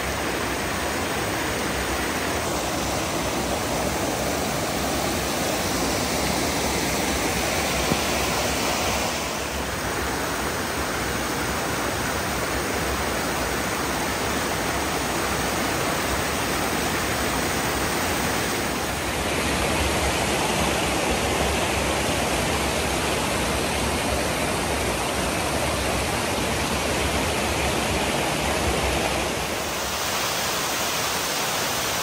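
Waterfall and cascading creek water rushing, steady throughout. Its tone shifts twice, about ten and nineteen seconds in.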